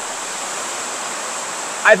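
Steady hiss of rain on the shed's steel roof, with a faint thin high whine under it; a man's voice starts again at the very end.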